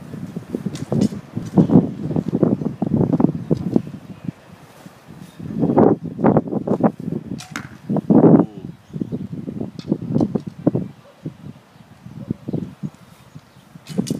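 Archery practice at rolling targets: a recurve bow being shot, with arrow sounds, amid an irregular run of knocks and thuds from discs rolling and bouncing over the mulch ground. The loudest bursts come around the middle.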